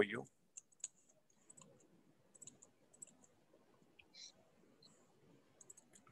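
Faint, irregular clicks of a computer mouse being worked, a few small clicks spread over several seconds.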